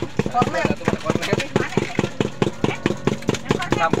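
Spoon stirring a drink in a cup, a rapid, even tapping of about seven knocks a second, over a steady low hum.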